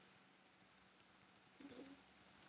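Near silence: faint room tone with a few scattered faint clicks.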